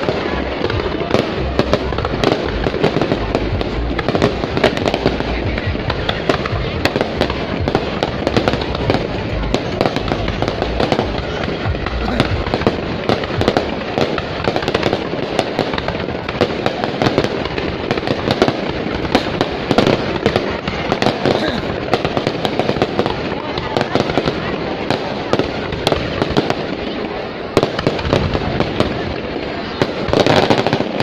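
Dense fireworks barrage: aerial shells bursting in many rapid, overlapping bangs and crackles.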